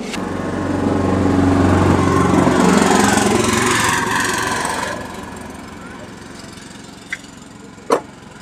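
A motor vehicle's engine swells up and fades away again over the first five seconds, as a vehicle passing close by. Near the end come two short plastic clicks as the scooter's ECM wiring connector is unlatched and pulled off.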